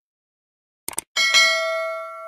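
An outro sound effect: a quick pair of clicks about a second in, then a bell chime struck twice in quick succession, ringing on and slowly fading.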